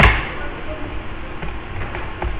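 A sharp click at the start, then a few faint taps over a steady low rumble.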